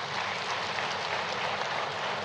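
Audience applauding: steady clapping of many hands.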